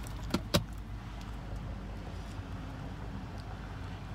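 Two sharp clicks in quick succession, about a third and half a second in, then a steady low hum inside a car cabin.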